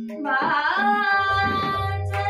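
A woman singing a Hindustani classical natya geet in Raga Todi. Her voice slides up into a held note about a second in, over tabla playing Ektal and a steady drone.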